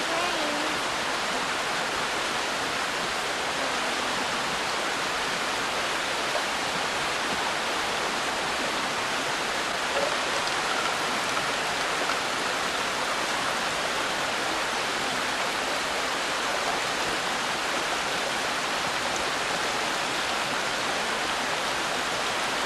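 A steady, even hiss that stays the same throughout, with no distinct events.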